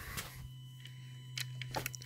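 A steady low electrical hum, with a few light, sharp clicks in the second half.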